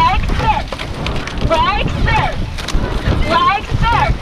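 Indistinct shouted calls, short and rising and falling in pitch, coming every second or so, over low wind buffeting on the microphone and the wash of a racing rowing boat.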